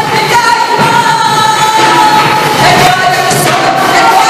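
A woman singing a worship song loudly through a microphone and sound system, holding long notes that step down in pitch a little past halfway.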